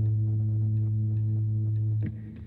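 A steady low hum, with faint irregular crackling from rice-coconut batter cooking in oil on an iron pan; both stop suddenly at the end.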